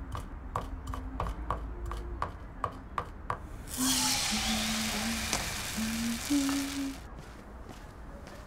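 Knife chopping on a cutting board, quick strokes about three to four a second. About four seconds in, batter poured into a hot frying pan sizzles loudly for about three seconds, then dies down.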